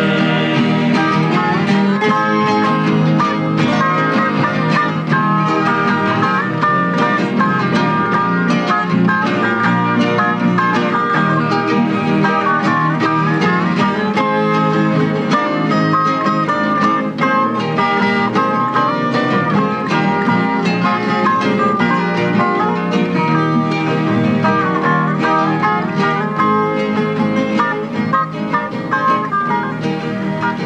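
A large ensemble of Brazilian violas caipiras and acoustic guitars playing together, many plucked steel and nylon strings carrying the melody over a steady accompaniment, with no singing.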